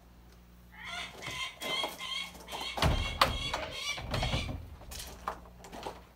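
A captive bird of prey calling over and over in short, harsh, chattering notes, with a few low thumps and knocks about halfway through.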